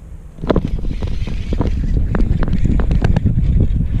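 Wind rumbling on an action camera's microphone, starting about half a second in, with irregular sharp clicks and knocks over it as a spinning reel is cranked on a hooked fish.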